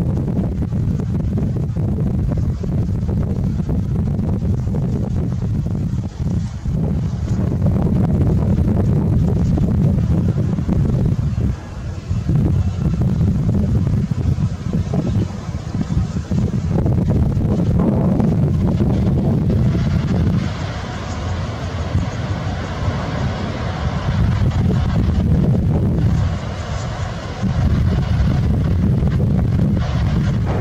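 Boeing 747-8F freighter's four GEnx turbofans at takeoff thrust during the takeoff roll: a loud, deep jet rumble throughout. A higher, hissing roar builds up in the second half as the aircraft passes closest.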